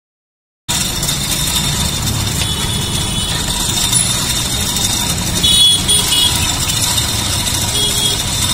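A steady low engine rumble, as from a motor vehicle idling, under general street noise. It cuts in abruptly just under a second in.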